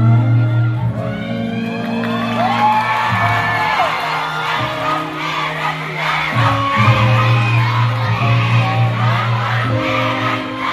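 Music played over a large venue's sound system: steady held low notes, heard amid a live audience cheering, with many short high-pitched screams and whoops from fans.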